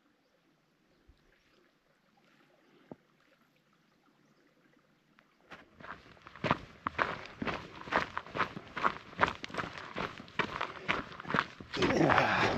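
Near silence for about five seconds, then hiking boots crunching on a loose gravel and stone path, with steady walking steps about two a second.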